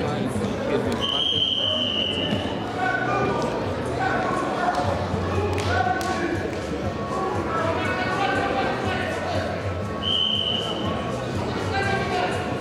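Wrestling arena hall ambience: indistinct voices through the hall, with a high steady tone like a whistle sounding twice, about a second in and again near ten seconds.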